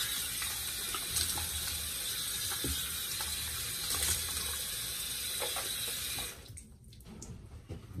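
Water running steadily from a tap into a sink, shut off about six seconds in.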